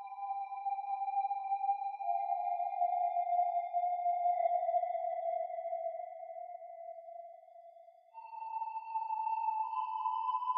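Electronic music made of long, steady held tones that drift slowly lower and fade out about eight seconds in, then a new, slightly higher tone comes in.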